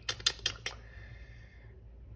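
A paper sticker sheet handled against a planner page: a quick run of about six light clicks and taps in the first moment, then a faint rustle that fades away.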